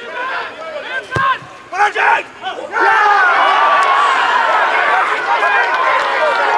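Football crowd and players shouting, a single thump about a second in, then from nearly three seconds in loud sustained cheering and yelling from many voices at once: supporters celebrating a goal.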